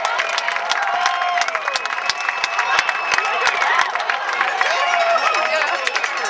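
Crowd in the stands cheering and clapping, many voices shouting at once over a run of sharp claps.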